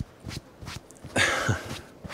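Light knocks and clicks, then a short scraping rustle about a second in: handling noises as the starter pull cord is refitted to the lawnmower's handle.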